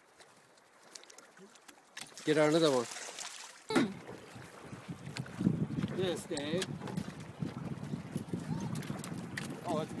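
Quiet at first, then a short shout, and from a few seconds in a steady rushing noise of wind and moving river water around a drift boat, with voices over it.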